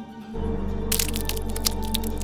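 Horror film soundtrack: a low drone with held tones swells in sharply just after the start, then about a second in a run of irregular sharp crackles begins over it.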